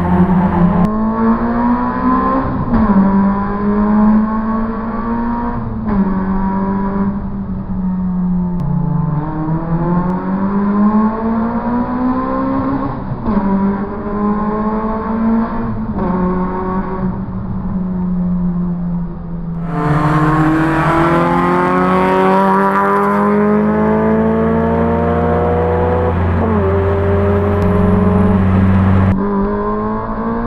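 Tuned Peugeot 106 GTI's 1.6-litre 16-valve four-cylinder, on Piper cams with a lightened flywheel, induction kit and aftermarket exhaust, heard from inside the cabin under hard acceleration. The engine note climbs in pitch and drops back at each upshift, over and over.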